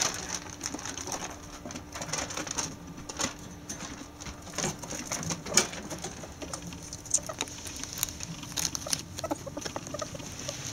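Pet ferrets scrabbling about a wire cage and carpet: irregular light clicks, taps and scuffles of claws and bodies against the wire and plastic.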